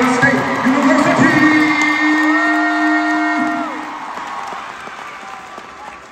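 Arena crowd noise and cheering around a marching band, with two long held notes in the middle, the higher one bending up as it starts and down as it ends. The sound fades away over the last two seconds.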